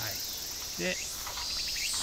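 Steady, high-pitched chorus of insects.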